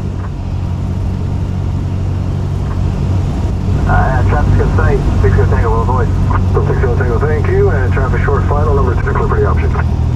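A Cessna 172's piston engine runs at low landing power as a steady drone heard inside the cabin, louder from about four seconds in. Over it from then until near the end, an unclear voice is heard.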